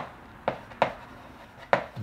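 Chalk tapping and scratching on a blackboard while writing: three short sharp clicks as the chalk strikes the board.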